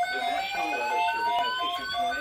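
NOAA weather alert radios sounding their alarm: a rapid beeping that alternates between a high and a low pitch, over a slowly rising siren-like tone, with a faint voice beneath.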